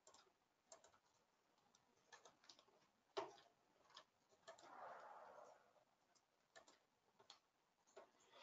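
Near silence broken by faint, scattered computer mouse clicks, irregular and some in quick pairs, the loudest about three seconds in. A soft, brief noisy swell follows around five seconds.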